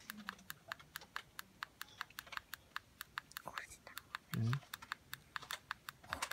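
A rapid, irregular run of light, sharp clicks, several a second, with a short low hum of a voice about four and a half seconds in.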